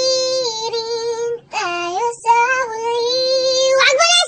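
A high-pitched singing voice holding long, sustained notes without words, in three held notes with short breaks about a second and a half and two seconds in, the middle one dipping and rising in pitch.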